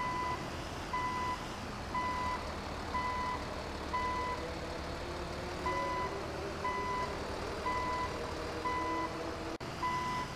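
An electronic reversing-alarm beep at one pitch, about once a second, with one longer gap about halfway, over a steady low rumble.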